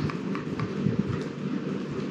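Low background noise with a few faint knocks as two rubber-bumpered external hard drives are handled.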